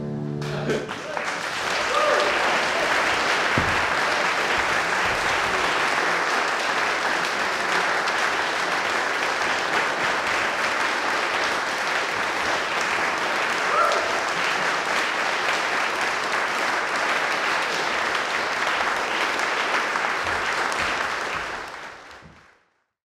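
The final chord of a classical guitar quartet dies away within the first second. An audience then applauds steadily, and the applause fades out at the very end.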